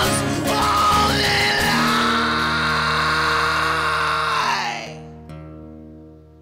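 A man's singing voice belting one long held note over two acoustic guitars, the note stepping up in pitch about a second in and breaking off near the end. The final guitar chord is left ringing and fading out, closing the song.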